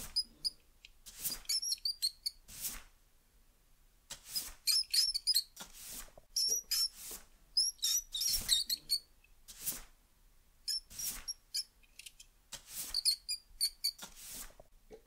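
Mouse squeaking in quick clusters of short, high chirps, over a broom sweeping a floor in regular strokes about every one and a half seconds.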